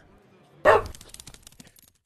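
A single short dog bark, a sound sting closing the video, followed by a quick run of fading ticks that die away just before the end.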